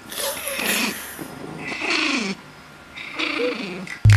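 A Pomeranian vocalizing in three drawn-out, whiny calls, each falling in pitch.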